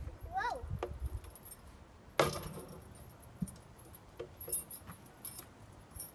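Chain-hung plastic playground stepping pods clinking and jangling on their chains as a child steps across them, with scattered small clinks and one sharp knock about two seconds in.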